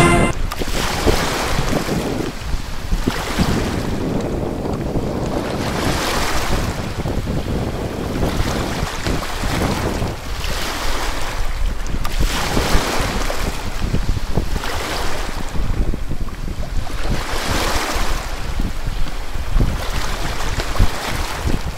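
Wind buffeting the microphone over choppy open water, with a broad rushing surge about every one and a half to two seconds.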